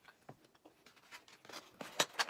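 Faint handling of a foam takeout container: light scraping and rubbing with a few small clicks, ending in a sharper sound as the lid is pressed shut near the end.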